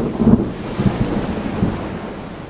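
Thunder rumbling with a steady hiss, loudest early and fading away.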